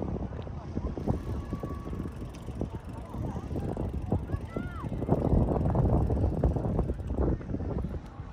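Outdoor crowd ambience: people's voices talking indistinctly, over a low, uneven rumble of wind on the microphone.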